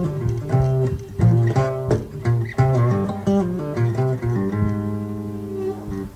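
Guitar music: plucked guitar notes over a bass line, settling about two-thirds of the way through into a held chord that stops at the end.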